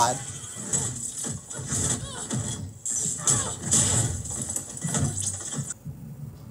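Upbeat soundtrack music from an animated fight scene, with a voice over it.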